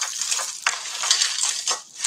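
Beaded necklaces and chains clinking and rattling together as jewellery is picked up and handled, a busy run of small, quick clicks.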